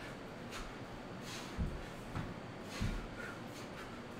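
Bodyweight core exercise on a hard floor: a few dull thuds as the body and legs come down, with short, sharp breaths between them, over a steady fan hiss.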